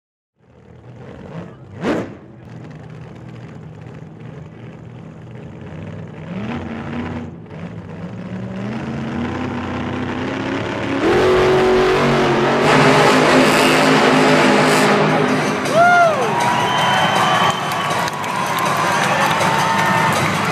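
Monster truck engines running and revving in an indoor arena, building from quiet to loud, with a sharp knock about two seconds in.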